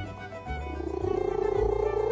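A domestic cat growling low while its belly is rubbed by hand, a held, pulsing sound about a second long starting half a second in, over background music with a steady bass beat.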